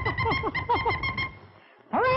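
Cartoon soundtrack effect for a sudden idea: a held high tone under a run of quick falling chirps, about six a second, that stops short about two-thirds of the way through.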